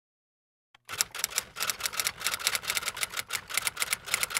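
Typing sound effect: rapid keystroke clicks, about six or seven a second, starting about a second in and keeping time with title text appearing letter by letter.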